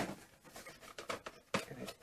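A cosmetics gift-set box being handled and opened by hand: a sharp click at the start, then scattered light taps and rubbing of the packaging, with a louder tap about one and a half seconds in.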